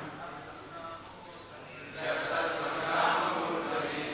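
Voice chanting a Sanskrit verse. There is a quieter lull for the first two seconds, then a sustained chanted phrase begins about two seconds in.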